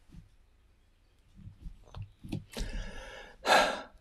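A man sighing: a longer breath out, then a short sharp breath near the end, after a few soft low knocks.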